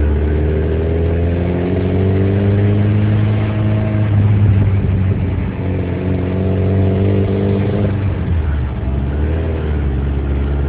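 1984 Lotus Turbo Esprit's turbocharged four-cylinder engine heard from inside the cabin while driving. The revs climb, fall back about four seconds in, climb again, dip near eight seconds and rise once more. The owner says the car has an exhaust leak from a hole in the catalytic converter.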